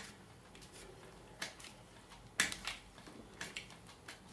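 Manfrotto 400 geared head being cranked to tilt a heavy 10x8 view camera forward: faint, irregular clicks and knocks from the head's knobs and the mounted camera, the loudest knock about two and a half seconds in.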